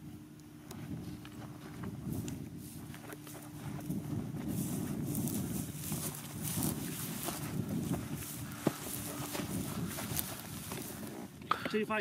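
Footsteps on dry grass and rocky ground, with brush rustling, as someone walks across scrubby terrain; one sharp click about two-thirds of the way through.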